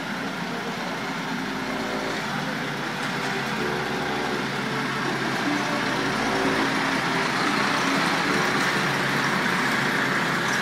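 MAN tipper truck's diesel engine running at low revs as the truck stands or creeps along, a steady engine and road noise that grows a little louder in the second half.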